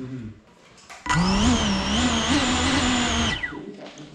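A GEPRC Cinelog35 cinewhoop's brushless motors and ducted props jump to idle speed on arming, with the drone still on the floor. They run with a loud, slightly wavering whine for about two seconds, then spin down with a falling pitch.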